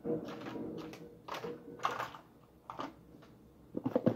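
Handling noise: a few separate light clicks and knocks, about four in all, as objects are picked up and moved about on a table.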